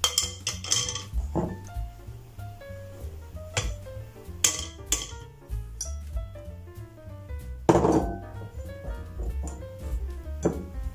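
A metal mesh sieve and glass bowls clinking and knocking against a glass mixing bowl as flour is poured in for sifting: several separate clinks, the strongest near the end. Background music with a simple melody plays throughout.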